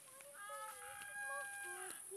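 A rooster crowing once: a single long call of about a second and a half.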